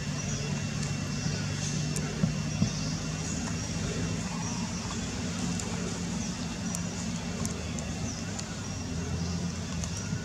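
Steady low motor hum with a few even low tones, like an engine running. Two short knocks come a little over two seconds in.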